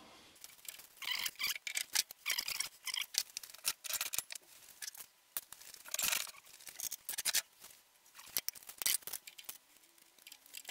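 A steel three-jaw lathe chuck being fitted by hand onto a lathe's spindle back plate: an irregular run of metal clicks, clinks and short scrapes as it is pushed onto its studs and seated.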